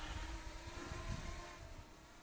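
Walkera Runner 250 racing quadcopter's motors and propellers humming faintly in flight at a distance, a steady pitch that fades out near the end.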